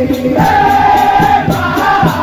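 A dikir group of men singing a chorus together over a steady percussive beat, with hand clapping. A new sung phrase comes in about half a second in.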